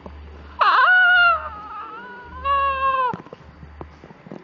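A man's voice giving two long, high, cat-like wails: the first about half a second in and loudest, the second about two and a half seconds in, falling slightly and ending abruptly near three seconds.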